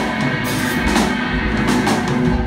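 Live rock band playing, with drum kit hits over a steady bed of bass, guitar and keyboard.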